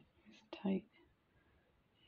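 A single short, soft spoken word or murmur from a woman, about half a second in, with quiet room tone around it.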